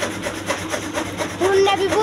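Chaff cutter chopping green fodder as it is fed in: a steady noisy cutting sound. A singing voice comes back over it about one and a half seconds in.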